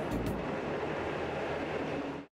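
Steady engine and wind noise from aboard the search aircraft, with no clear tune or beat.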